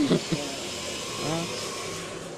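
Steady whirring of the fish tanks' pumps running, with a couple of brief voice sounds over it, one at the start and one past the middle.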